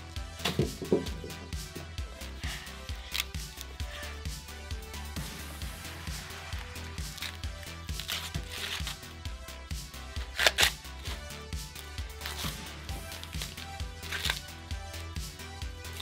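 Background music with a steady beat, with scattered sharp ripping sounds of green corn husks being torn off fresh ears of corn by hand. The loudest tear comes about ten seconds in.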